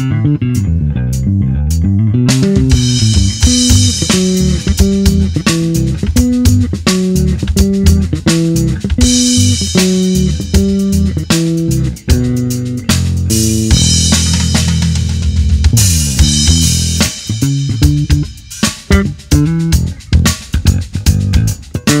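Bacchus Handmade Series WL 417 AC LTD/Sakura four-string electric bass played fingerstyle, a busy moving bass line over a backing track with drum kit. The drums are sparse for the first couple of seconds, then come back in fully.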